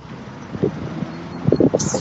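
Citroën C3 Picasso 1.6 diesel engine idling steadily, with wind noise on the microphone over it.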